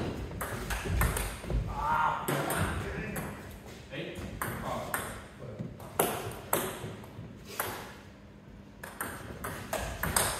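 Table tennis rally: the celluloid-style ball clicking sharply off the rubber bats and bouncing on the table, a quick run of pings with a short lull late on.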